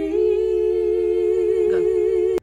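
Two girls' voices, unaccompanied, holding one long note together in two-part harmony with a slight vibrato.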